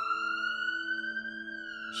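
A single siren wail that rises, holds high and falls slowly near the end, over background music holding a steady low chord.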